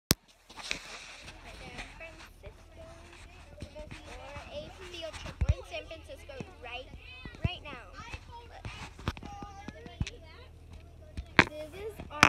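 Children chattering over one another inside a moving school bus, over a steady low engine hum, with sharp knocks and rattles now and then, the loudest one right at the start.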